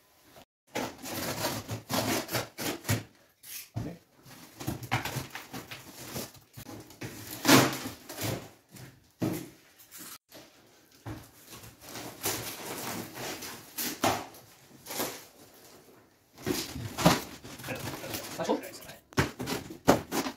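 Irregular knocks, scrapes and rustles of a large cardboard box being handled on a tiled floor and its cardboard being opened, with short quiet gaps between.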